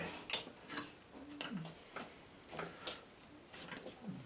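Irregular light clicks and taps from a card-mounted watercolour being handled, among a few short low hums of a man's voice.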